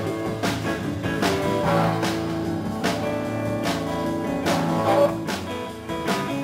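Live band playing: electric guitars, bass guitar and drum kit, with sustained guitar notes over a bass line and a regular drum beat.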